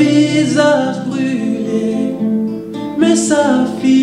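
A man singing a slow worship song to his own acoustic guitar, in two sung phrases, the second starting about three seconds in.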